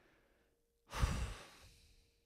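A man sighs once, about a second in: a short breathy exhale straight into a handheld microphone, with a low puff of air on the mic.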